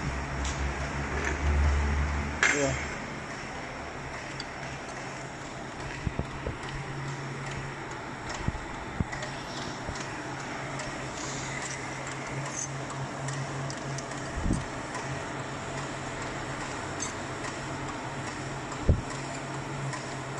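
Machine-shop background: a low machine hum that stops about three seconds in, then a steadier hum with a few sharp knocks scattered through.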